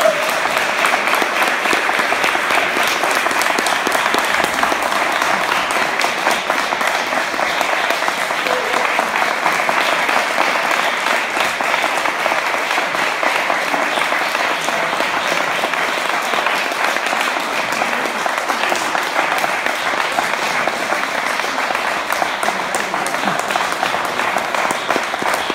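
Audience applauding, a dense and steady clapping that runs without a break.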